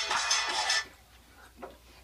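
Mouthwash being swished around a closed mouth, a hissy sound that stops a little under a second in. Then near silence, with one faint short sound about a second and a half in.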